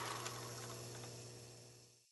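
Faint steady hiss with a low hum, fading out to silence near the end.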